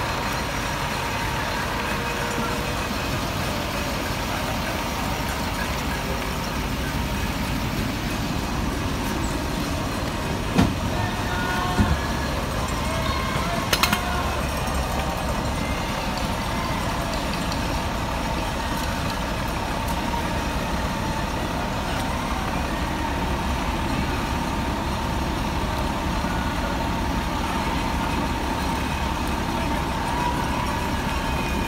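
Fire engine's diesel engine running steadily while it pumps water into the connected hoses. A few short sharp knocks come between about ten and fourteen seconds in.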